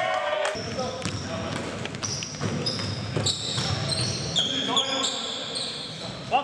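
Basketball game on a hardwood gym court: sneakers squeak in many short, high-pitched chirps, the ball bounces, and players' voices call out in the echoing hall.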